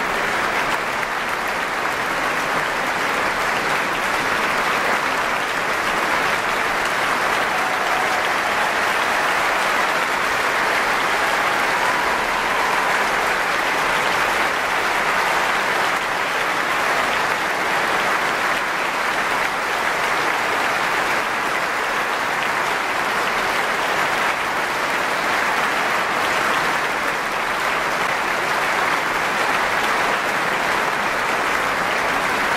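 Audience applauding steadily, a long unbroken ovation with no music playing.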